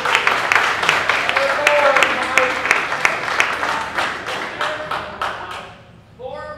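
Audience applauding, many hands clapping quickly together, the applause dying away near the end.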